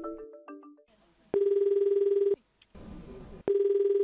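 Telephone ringback tone heard down the line: two steady, buzzy one-second rings about two seconds apart, the called number ringing and not picked up. A few fading notes of mallet-percussion music come first.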